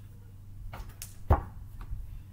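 A basketball thudding as it comes down and bounces: a few short knocks starting just under a second in, the loudest and deepest about halfway through.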